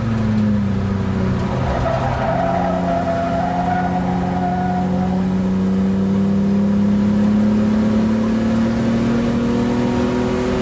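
Ford Sierra XR4x4 V6 engine heard from inside the cabin on track. Its note dips briefly about a second in, then holds and climbs slowly as the car pulls along the straight.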